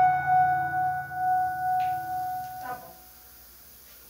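Final electric-piano chord, a Rhodes Mk V patch on an Ensoniq TS-12 synthesizer, ringing out and fading away, gone a little under three seconds in.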